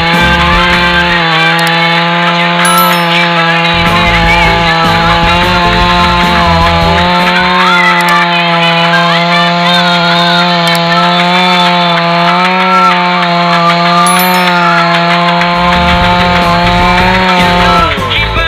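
Petrol two-stroke chainsaw held at high revs, its engine note wavering slightly as the chain cuts through a kikar (acacia) log.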